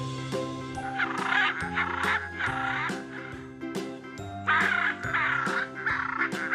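Macaw squawking in harsh, repeated calls, three in a row, then a short pause and three more, over light background music with steady notes.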